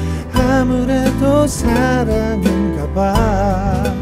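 A man singing a slow Korean pop melody with vibrato over a bass guitar and guitar backing track, a vocal take recorded through a MOTU M4 audio interface.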